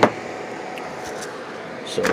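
A sharp knock from gear being handled on a workbench, then a steady low background hiss with a few faint clicks, and another knock near the end.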